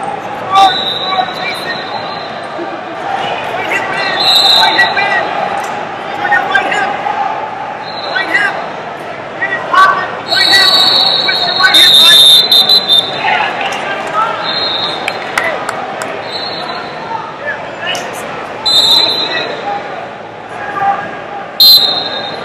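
Busy wrestling hall: shrill referee whistle blasts again and again, the longest and loudest about ten to thirteen seconds in. Under them are shouts from coaches and spectators and thuds of wrestlers hitting the mats, all echoing in the large room.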